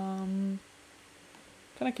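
A person humming a long, steady-pitched thinking "mmm" that stops about half a second in. After a short pause, speech starts near the end.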